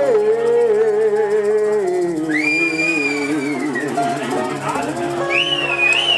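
Acoustic guitars and a man singing one long held note that slides slowly down as the song ends, with a long high whistle starting about two seconds in and a shorter whistle that rises and falls near the end.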